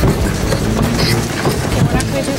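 Shopping cart rattling steadily as it is pushed along a store aisle, with faint voices around it.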